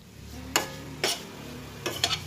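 Metal utensil scraping and knocking against a stainless steel frying pan while stir-frying minced beef with basil, three sharp scrapes over a faint sizzle.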